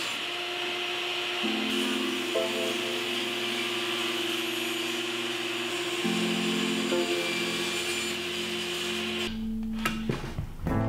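Table saw running steadily as it rips a board of granadillo, under background music with held, slowly changing notes. The saw noise cuts off near the end.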